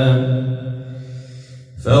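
A man's voice chanting Quranic recitation in melodic tajweed style, holding a long steady note at the end of a phrase that fades away over the first second. After a short pause the chanting starts again near the end.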